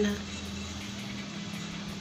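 A steady low hum with an even hiss of background noise, no distinct events, after the last word of a woman's speech at the very start.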